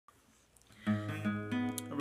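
Acoustic guitar being strummed: after a near-quiet start, a chord rings out a little under a second in and is struck again a couple of times.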